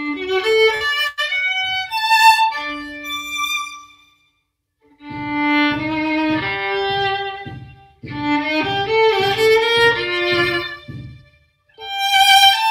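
Solo violin playing in bowed phrases, with a short pause a little after four seconds and another just before the end.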